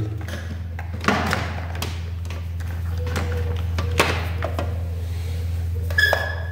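Handling on a workbench: a few light knocks and clicks, a sharper one about a second in and another about four seconds in, over a steady low hum.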